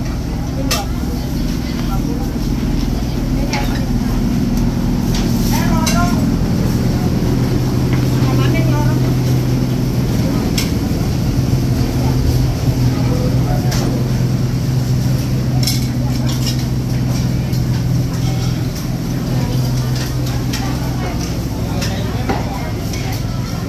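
Busy covered-market ambience: scattered voices of vendors and shoppers over a steady low engine-like hum, with occasional sharp clicks and knocks.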